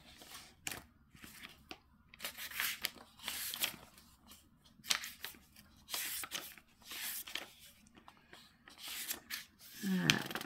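Paper rustling and crinkling in short irregular bursts, a sheet being handled while a drill colour list is searched.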